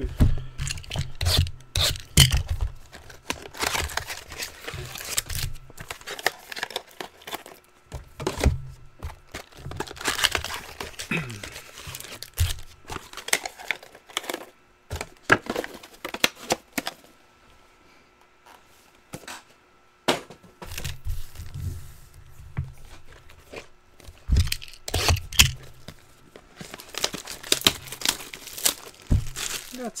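Cardboard hobby boxes and foil trading-card packs being handled and opened: tearing and crinkling mixed with sharp knocks on the table. There is a brief lull a little past halfway.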